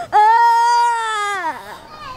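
A man's long, loud, high wailing cry, held on one pitch for over a second and then falling away.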